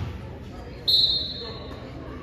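A basketball bounces once on the hardwood gym floor right at the start. About a second in comes a short, loud, high-pitched whistle blast lasting about half a second, typical of a referee's whistle.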